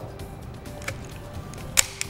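Faint background music, with a light click about halfway and a sharper click near the end from a hand-held PEX expander tool as its handles are pumped to expand the pipe.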